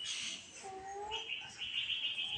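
Birds calling: a short, slightly rising call about half a second long, then a choppy high-pitched chirping that runs on.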